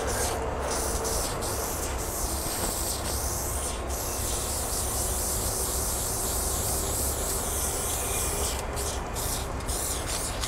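Aerosol spray paint can hissing in long continuous sprays, then shorter on-off bursts near the end, over a steady low rumble.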